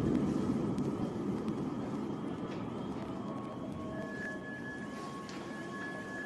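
Steady low rumble of city ambience picked up by an outdoor live camera at night. Faint, steady high-pitched tones join about three and then four seconds in.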